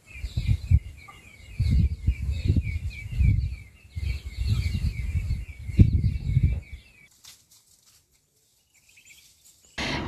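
Birds chirping in a fast, steady run of short, repeated calls, over loud, uneven low rumbles of wind buffeting the microphone. Both stop about seven seconds in, leaving near silence.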